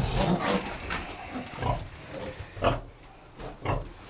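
Ten-day-old Pietrain-cross piglets grunting in a pen: a few short, separate grunts over some shuffling.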